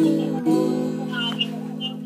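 Guitar strummed twice, about half a second apart, the chord left ringing and slowly fading.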